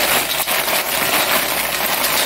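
Dried red chili peppers rustling as white cotton-gloved hands rub and stir them in a stainless steel bowl, wiping the dust off the pods. The rustle is steady and dense, with one sharper click about half a second in.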